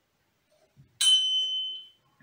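Bright electronic chime from the interactive whiteboard's picture game, sounding about a second in with several high ringing tones that fade in under a second, confirming that the touched picture is the right answer.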